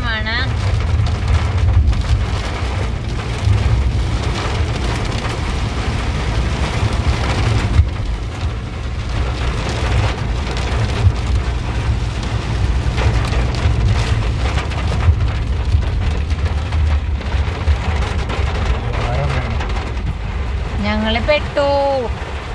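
Heavy rain falling on a car's roof and windshield, heard from inside the cabin, a dense steady patter of drops over the low rumble of the moving car.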